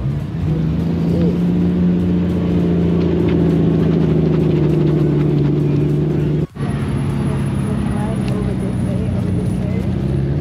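A car engine running at a steady idle, a continuous low drone. It breaks off for an instant about six and a half seconds in, then carries on a little lower in pitch.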